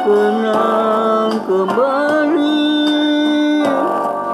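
A Malay-language pop ballad with guitar accompaniment. The singer's line glides up and down, then settles into one long held note on "oh" through the second half.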